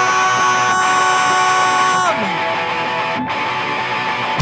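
Punk-rock electric guitar alone in a break, without bass or drums, holding sustained notes that slide down about halfway through, then ringing on a single held note.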